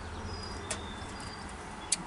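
Faint bird chirps over a low, steady outdoor background hum, with two light clicks, one a little under a second in and one near the end.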